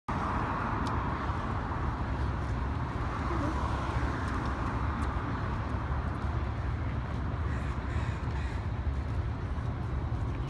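Steady city street noise: traffic on the road below, with a low, fluctuating wind rumble on the microphone.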